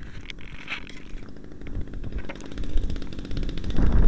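Wind buffeting the microphone of a keychain camera mounted on a hand-held glider, with a faint fast ticking. The rumble swells near the end as the glider is swung into its discus-launch spin.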